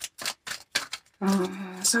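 Deck of tarot cards being shuffled by hand: a run of sharp card flicks, about five a second, stopping about a second in when a voice starts speaking.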